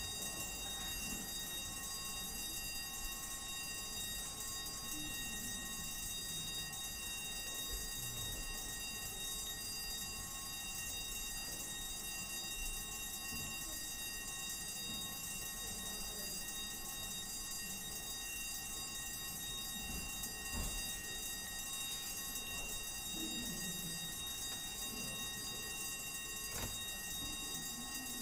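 Chamber division bells ringing steadily without a break, the signal that a division vote has been called. Faint murmur and movement sit underneath.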